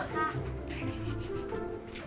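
Soft rubbing and shuffling noises of people walking barefoot, with quiet background music underneath.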